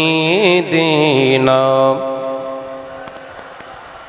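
A man's voice chanting a devotional Islamic hymn into a microphone. A long, winding phrase settles on one held note that ends about two seconds in, and the sound then fades away.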